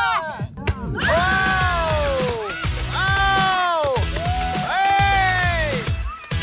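Long, drawn-out 'wow' exclamations at fireworks, three of them, each falling in pitch, over background music with a steady low beat.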